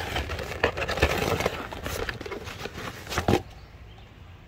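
Cardboard box and paper and plastic packaging being handled and rustled as a key fob shell is taken out, with scattered small clicks and a sharper click a little after three seconds.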